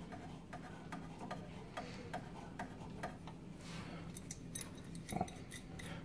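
Faint, irregular small metallic clicks and ticks from a brass compression nut and service valve being handled and threaded onto a copper pipe by hand, over a low steady hum.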